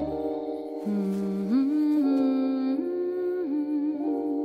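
Music: a voice humming a slow wordless melody in long held notes, stepping up and back down, over soft sustained chords.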